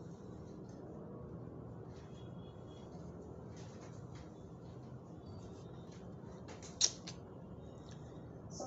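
Low steady room noise with a few faint clicks and one sharp click about seven seconds in.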